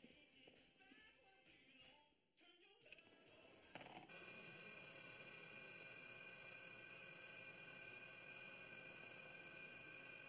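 Faint electronic ambient music: a quiet, shifting passage, then about four seconds in a steady synthesizer drone of several held tones takes over.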